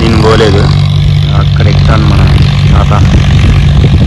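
An engine running steadily with a low, even hum, and a man's voice briefly over it at the start.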